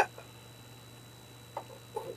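Quiet pause in speech: a steady low hum of room tone, with one faint click about a second and a half in.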